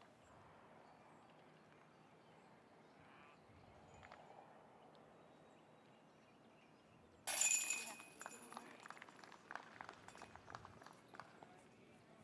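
A putted disc strikes the metal chains of a disc golf basket about seven seconds in: a sudden metallic jangle that rattles on faintly for a few seconds. Before it there is only faint outdoor ambience.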